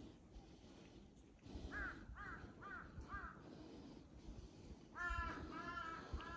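A crow cawing: four short calls about two seconds in, then a louder, harsher run of caws near the end.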